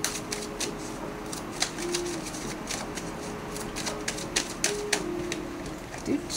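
Tarot cards being shuffled by hand: a run of quick, irregular clicks and snaps.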